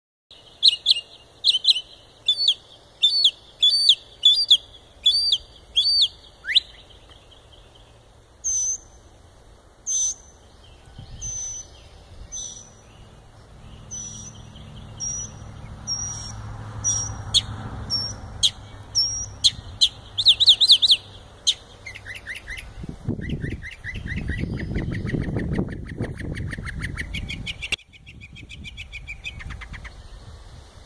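A songbird singing from a rooftop: a long string of sharp, high notes in repeated phrases, each note given several times before the song switches to a new pattern, with a fast trill and a rapid run of lower notes near the end. A low rumble runs underneath through the second half.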